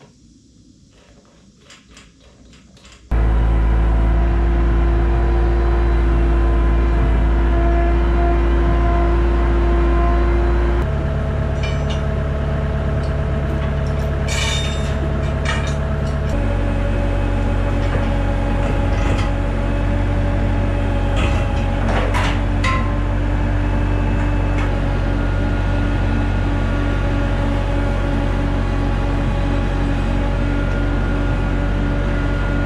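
Bobcat 864 compact track loader's diesel engine running steadily and changing speed twice, with a few metal clanks. A short quiet spell with light clicks comes before the engine.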